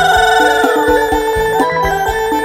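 Live Khmer pop dance-band music. A steady drum beat runs under a long held lead note with a wavering pitch, which fades out about a second in.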